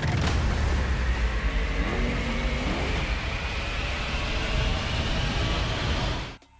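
Film-trailer sound effects of a huge breaking tsunami wave: a dense rushing, rumbling noise heavy in the low end. A thin whine underneath slowly rises in pitch.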